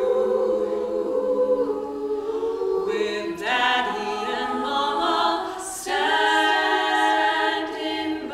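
A women's a cappella ensemble singing in harmony, with no instruments: held chords, and new phrases coming in about three and a half seconds in and again near six seconds.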